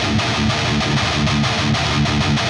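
Electric guitar fitted with Fishman Fluence humbuckers, playing a quick, even run of single notes picked with alternating down and up strokes.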